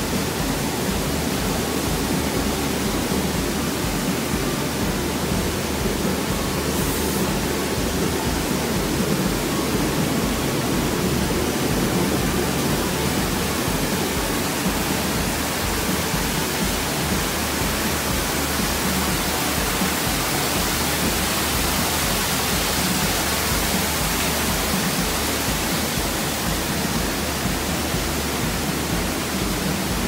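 Steady rushing water noise from an indoor spa pool, with whirlpool jets churning the water.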